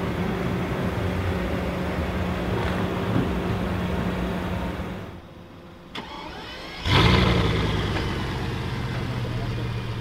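Bugatti Veyron's quad-turbo W16 engine starting about seven seconds in: a sudden loud burst that settles into a steady idle. A steady hum fills the first five seconds and then drops away, and a single click comes just before the start.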